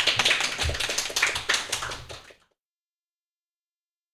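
A small group of people applauding, a dense patter of hand claps that cuts off suddenly about two and a half seconds in.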